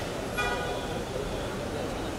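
A vehicle horn toots once, about half a second in, and fades within about a second, over crowd chatter and street noise.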